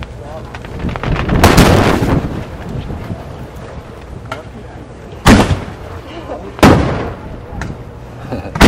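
Aerial firework shells bursting close overhead. A longer rumbling boom comes about one and a half seconds in, then two sharp, loud bangs about five and six and a half seconds in, each trailing off in a rumble.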